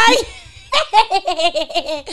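A woman laughing hard: a loud, high-pitched whoop at the start, then a rapid run of short laugh pulses, several a second.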